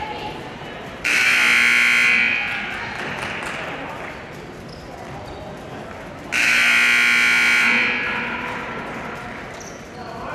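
Gymnasium scoreboard buzzer sounding twice, each blast a little over a second long and about five seconds apart, ringing on in the hall after each: the signal that the timeout is over. Crowd chatter continues underneath.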